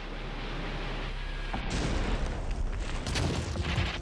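Battle gunfire and explosions: a rumbling noise that swells louder about a second and a half in, with a few sharp cracks near the end.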